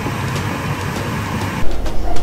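Meatballs in thick sauce simmering in a pan, a steady low bubbling rumble. It cuts off abruptly near the end, where a louder, more uneven sound takes over.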